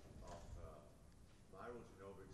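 Faint, distant speech in two short phrases, picked up well below the lecture microphone's usual level.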